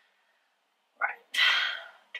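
A woman sneezing once: a quick sharp intake of breath about a second in, then a single loud sneeze that fades out within half a second.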